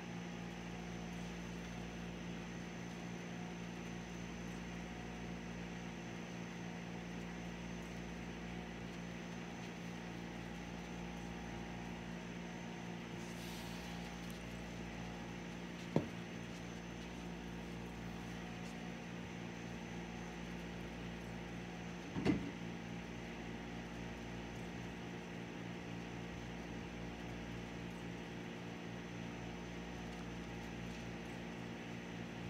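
A steady mechanical hum, as of a running appliance, broken by two sharp knocks about sixteen and twenty-two seconds in.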